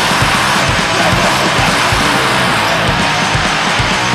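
Blackened crust (black metal and crust punk) song: heavily distorted guitars as a dense, loud wall of sound over bass and constant drum hits, at a steady level.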